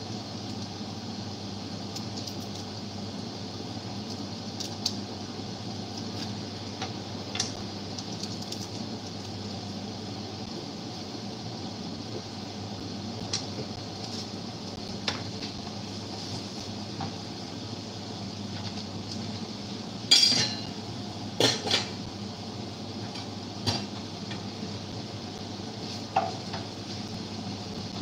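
Kitchen clatter of pots, lids and metal utensils: scattered light clinks and taps, with a few louder clanks about two-thirds of the way through, over a steady background hum.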